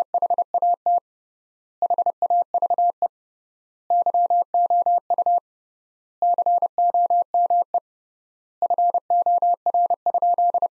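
Computer-generated Morse code at 30 words per minute: a single steady beep of about 700 Hz keyed on and off in quick dots and dashes, in five word groups with pauses of about a second between them. The five words spell out "What have you come for?".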